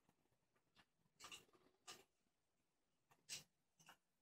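Faint scratches and clicks of a lock pick and tension tool working the wafers inside a vintage Yale wafer padlock, coming in short bursts, with the loudest a little after a second in and again past three seconds.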